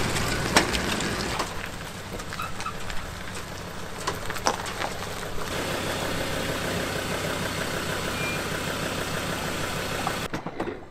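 Pickup truck (ute) engine running as it tows a boat trailer past, with a few sharp clicks and knocks; about five and a half seconds in the sound changes to the engine idling steadily.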